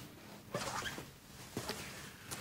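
Faint rustling and a few light knocks as a man walks in through a doorway: footsteps and the rustle of his clothing, in two brief clusters about half a second in and near the end.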